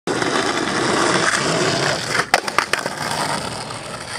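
Skateboard wheels rolling on rough asphalt. About two and a half seconds in comes a quick run of sharp clacks, the board popping and landing in a flat-ground trick, then the rolling goes on more quietly.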